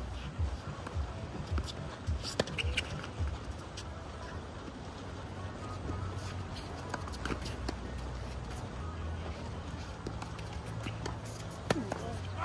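Tennis rally on a hard court: scattered sharp racket-on-ball strikes and footsteps, with a louder strike just before the end as a forehand is hit.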